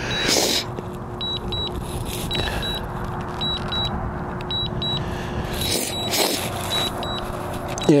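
DJI Mavic Mini remote controller sounding its alert: short, high-pitched double beeps repeating about once a second while the drone is in return-to-home mode at long range. A steady rushing noise, like wind on the microphone, runs underneath.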